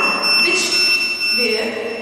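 Electronic buzzer of a homemade rotten-fruit detector sounding one steady high-pitched tone, the alarm for a 'rotten' reading from its alcohol sensor, cutting off a little over a second in; voices talk over it.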